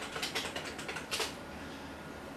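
Typing on a computer keyboard: a quick run of about ten key clicks, with one louder keystroke near the end of the run, a little over a second in. After that the typing stops.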